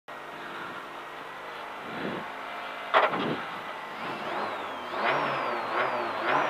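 Peugeot 208 R2 rally car's 1.6-litre four-cylinder engine idling, heard from inside the cabin, then revved: a sharp loud burst about three seconds in, followed by repeated blips with rising pitch.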